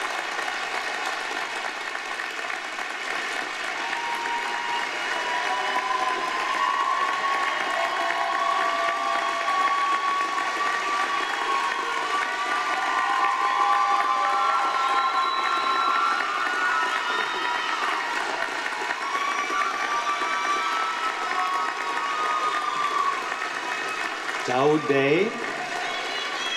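A large audience applauding at length, with cheering voices rising over the clapping through the middle. A man's voice begins speaking near the end.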